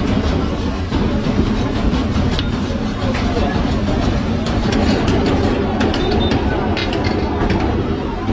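Steady din of a busy street-food stall: meat frying and steaming on a large flat steel griddle, with sharp metal clicks scattered through the middle of the stretch, over constant voices and a low rumble.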